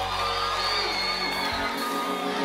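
Live gospel band playing an instrumental passage: sustained keyboard chords with high gliding lead lines, the deep bass dropping out about one and a half seconds in.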